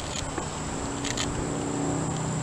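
Outdoor ambience dominated by a steady low motor hum that grows slightly louder partway through, with a thin steady high-pitched whine and a few faint short clicks.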